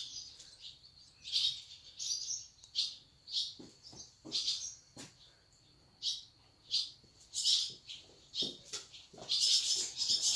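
Small birds chirping: a dozen or so short, irregular high chirps. Near the end a denser high hiss sets in.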